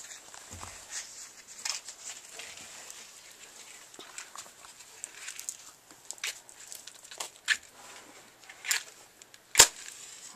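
Small scattered clicks and rustles of a matchbox and match being handled, then one sharp scrape near the end as a match is struck and flares.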